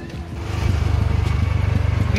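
Auto-rickshaw engine running, heard from inside the passenger cabin: a steady, low, fast-throbbing drone that comes in about half a second in.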